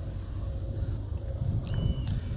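Light breeze buffeting the microphone: a low, steady rumble. A brief high-pitched tone comes near the end.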